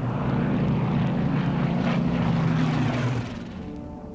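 Steady low drone of propeller-driven warplanes' piston engines flying past, fading out about three seconds in.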